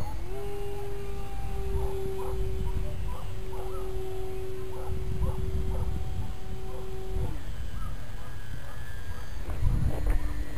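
Electric motor of a HobbyZone Super Cub RC plane in flight, a steady whine that rises as it comes up to speed, holds, and cuts off about seven seconds in, then returns at a lower pitch near the end as the throttle changes. Wind rumbles on the microphone throughout.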